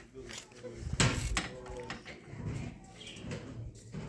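Faint distant voices of other people carrying from neighbouring cabins, with a short burst of noise about a second in.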